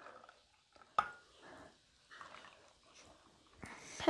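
The last of hot milk poured from a glass jug into a glass mug, then glassware handling with one sharp glass clink about a second in. Faint scattered small sounds follow.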